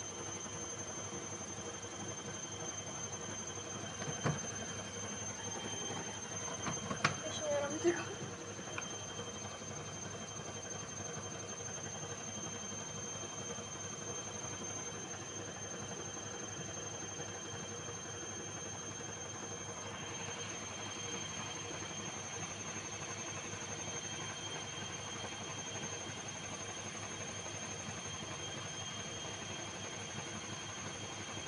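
Bosch front-loading washing machine running a wash with a carpet in its drum full of foamy water. It makes a steady running noise with a thin high whine, broken by a short knock about four seconds in.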